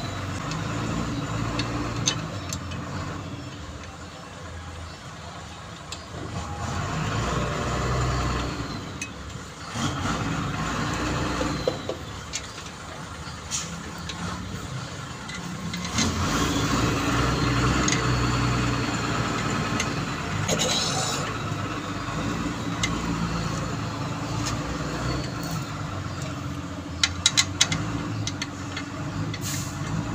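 Engine and vehicle noise that swells and fades over the span, with a quick run of sharp metallic clicks near the end.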